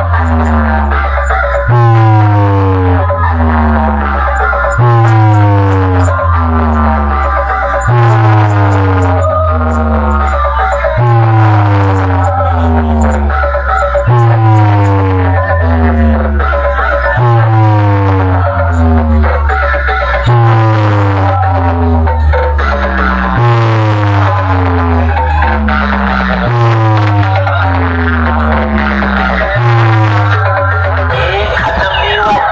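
A large DJ competition sound system plays a loud electronic track for a setup test. A deep bass that steps down in pitch and a falling run of tones above it repeat as one pattern about every three seconds.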